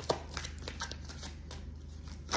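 A deck of oracle cards being shuffled by hand: a run of soft, quick card clicks, with a sharper click a moment in.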